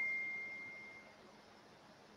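A single high, pure ding rings out and fades away over about a second, leaving faint hiss.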